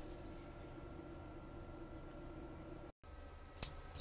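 Faint steady hum with a thin steady tone from a Senville ductless split air conditioner running, cut by a brief dropout about three seconds in and followed by a single click.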